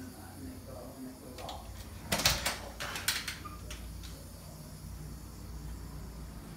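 Louvered bifold closet door being pulled open, a quick clatter of clacks and rattles about two seconds in that lasts about a second.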